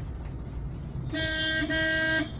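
A car horn honks twice in quick succession about a second in, two short steady blasts over the low rumble of a car driving, heard from inside the cabin.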